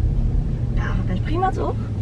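Low steady hum of a Toyota car's engine and road noise, heard from inside the cabin while it drives slowly.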